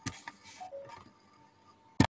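Faint room tone with a steady thin hum, a sharp click just after the start, a few small ticks and a brief soft rustle within the first second, then a loud sharp click at the very end.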